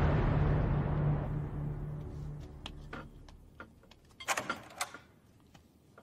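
Dramatic soundtrack music ending on a loud crash that fades away over about three seconds. Then come a few clicks and a short clatter about four seconds in, as a wooden door is opened.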